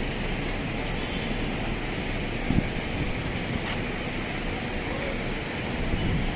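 Street traffic ambience: a steady wash of vehicle noise with wind on the microphone, and one brief short sound about two and a half seconds in.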